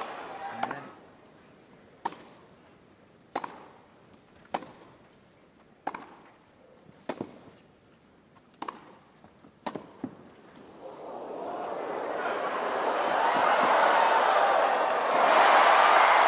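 Tennis rally: about eight sharp racket-on-ball strikes a little over a second apart. From about eleven seconds in a crowd's noise swells and grows loud near the end.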